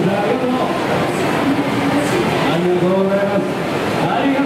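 Several people's voices talking indistinctly at once over a steady background din, heard in a large, busy indoor hall.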